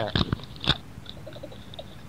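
A few short clicks and knocks in the first second, then only faint, scattered small sounds.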